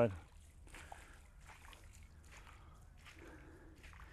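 Footsteps of someone wading through shallow, muddy water in rubber boots, with faint sloshing splashes at each stride.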